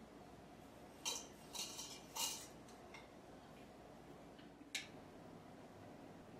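Dry pu-erh tea leaves pushed with a wooden tea pick from a small porcelain dish into the filter of a glass teapot: a few short scrapes and clinks in the first half, then one sharp click a little before the end.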